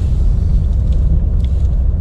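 Steady low rumble of a Volvo XC90 SUV driving on a wet road, heard from inside the cabin: engine and tyre noise.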